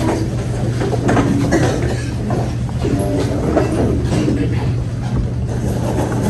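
Steady low hum of room noise, with irregular knocks and shuffling, and brief faint voices about halfway through.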